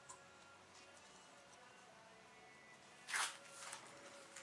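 Near silence, then about three seconds in a brief rustling scrape, followed by softer rustling, as the pleated element of a cut-open oil filter is handled.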